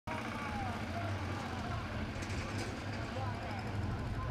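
Outdoor street-market ambience: scattered voices of people talking over a steady low rumble of vehicle traffic.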